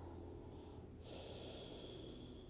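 Quiet room tone with a low steady hum, and a faint breath through the nose starting about a second in.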